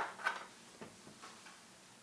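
A few faint clicks of chalk tapping on a blackboard as a word is written.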